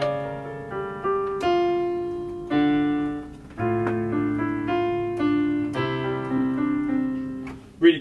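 Casio CT-X5000 keyboard's built-in acoustic piano sound playing a slow run of chords. A new chord is struck about every second and left to ring and fade.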